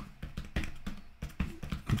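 Computer keyboard typing: a quick, irregular run of keystroke clicks.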